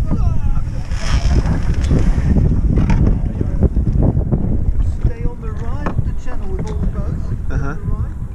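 Wind buffeting the microphone in a steady low rumble, with canoe paddles dipping into canal water and brief snatches of voices.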